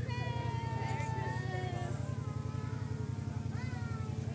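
High-pitched children's voices calling out and squealing, one long held call in the first second and a half, over the steady low rhythmic chugging of a small engine running throughout.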